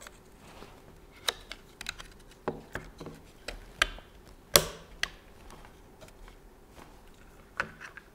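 A scattered series of small plastic clicks and taps as hands handle a 3D-printed nylon cable cover clipped onto a combat robot's carbon-fibre frame. The sharpest click comes about four and a half seconds in, with one more near the end.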